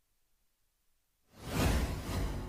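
Near silence, then about one and a half seconds in a sudden loud whoosh sound effect from the broadcast's animated 'MAXIMUM' graphic stinger, the cue that a six has been hit.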